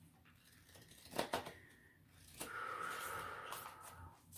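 Oracle cards being handled and drawn from the deck: a faint tap about a second in, then a soft sliding rustle of cards for over a second.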